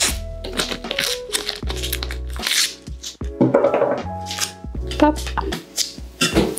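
Masking tape pulled off its roll in a run of quick ripping sounds and torn off, over background music with a steady bass line.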